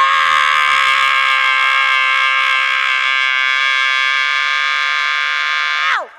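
A woman's voice through a microphone, holding one long, loud high note for about six seconds. Near the end the note drops in pitch and stops.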